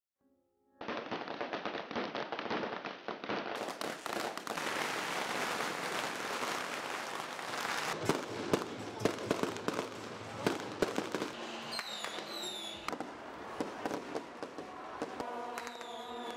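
Firecrackers and fireworks going off in a dense, continuous crackle of sharp pops, starting about a second in, with a few brief falling whistles near the end.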